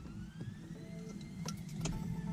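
Faint metal clicks of an Allen key on the shifter's set screw as it is torqued down, two sharp ones in the second half. Behind them a faint tone rises in pitch over the first second and then holds steady.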